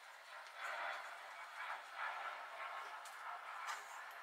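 Makeup sponge dabbed and rubbed against the skin of the neck while blending foundation: soft, irregular patting and brushing, with a couple of light clicks near the end.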